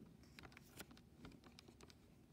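Faint clicks of a TI-83 Plus graphing calculator's keys being pressed one after another as an equation is typed in.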